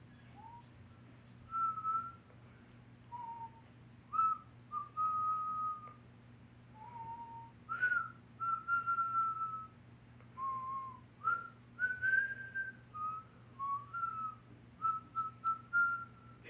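A person whistling a meandering tune by mouth: short single notes, some sliding up into the next, in phrases with brief pauses between them.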